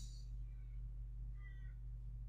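Steady low electrical hum, with faint short high-pitched tones about half a second and about one and a half seconds in.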